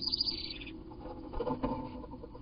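A wren's quick run of high chirps, lasting well under a second, sped up with the double-speed footage. It is followed a second later by scratchy rubbing and light knocks of nest material against the wooden nest box.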